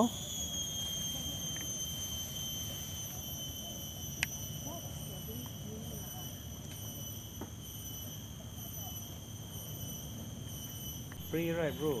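A steady high-pitched whine with several overtones runs through, over a faint background hiss, with one sharp click about four seconds in.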